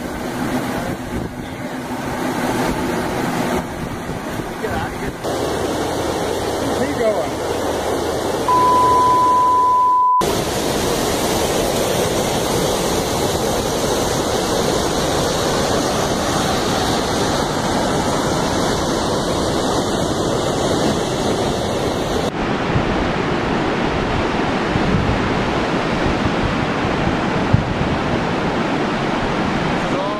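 Turbulent orange acid mine drainage from the Gold King Mine spill rushing down the creek channel, a steady heavy roar of water mixed with wind on a phone microphone. A single steady high beep lasts about a second and a half about nine seconds in.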